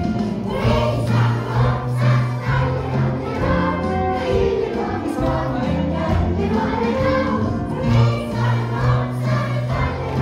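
A live band of strings, winds, guitar, electric bass and drums playing a Christmas song with a steady beat, with a group of voices singing along.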